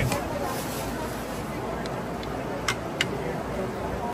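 Steady background murmur of an open-air restaurant, with two sharp clicks close together near the end.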